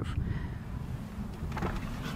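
Wind rumbling on the microphone outdoors, with a faint knock about a second and a half in.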